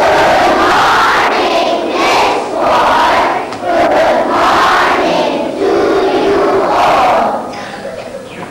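A large group of young schoolchildren shouting together in unison, six or seven loud phrases in quick succession about a second apart.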